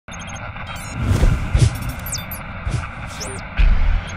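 Animated logo intro sting made of electronic sound effects: a series of low booms with high, chiming whooshes that slide in pitch between them, ending on a longer low rumble.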